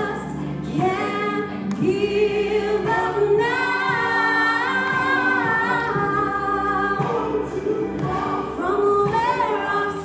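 A woman singing a gospel song solo into a handheld microphone over instrumental accompaniment, holding one long wavering note through the middle.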